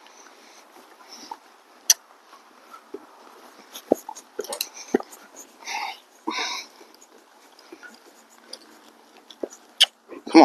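A draft-cross horse walking under saddle on dirt: scattered hoof knocks and tack clicks over a faint steady hiss, with two short breathy bursts around the middle.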